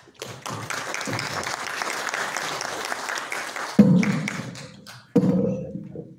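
Audience applauding for a few seconds, then two short, loud pitched sounds, one about four seconds in and one about five seconds in.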